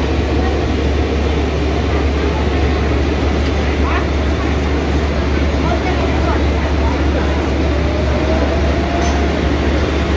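Steady loud low rumble of background noise with faint, indistinct voices.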